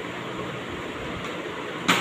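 Steady background hiss, then a single sharp knock just before the end as a ceramic milk jug is set down on a tray.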